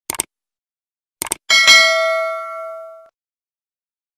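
Subscribe-button sound effects: a couple of quick mouse clicks, two more a little over a second in, then a bright bell-like notification ding that rings out and fades over about a second and a half.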